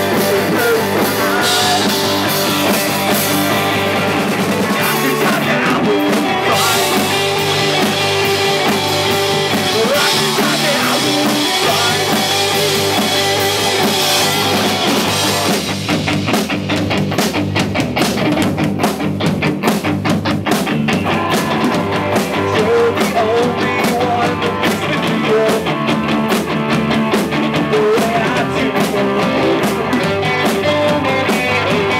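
Rock band playing live: two distorted electric guitars, electric bass and a Tama drum kit. About halfway through, the cymbal wash drops away and the band settles into a sparser passage with an even drum beat.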